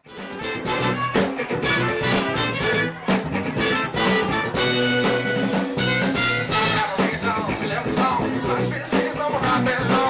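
A band playing an upbeat jazz-funk number with a steady drum beat and bass, starting abruptly at the beginning.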